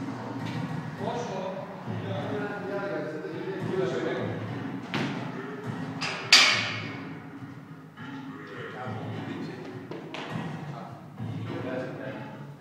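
Indistinct voices in a large gym hall, with a knock about five seconds in and a louder, sharp thud just after six seconds that rings out briefly.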